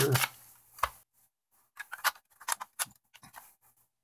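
A series of small, sharp plastic clicks and taps as AA batteries are handled and snapped into a battery holder: one click about a second in, then several more in quick succession over the next two seconds.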